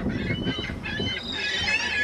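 A flock of birds calling over one another, many short overlapping calls that keep up throughout.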